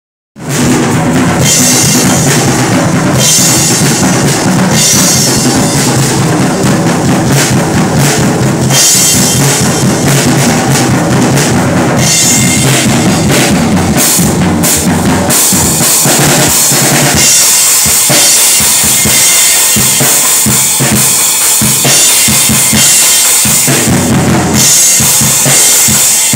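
Loud acoustic drum kit being played continuously: bass drum, snare and toms struck in a dense beat under steadily ringing cymbals.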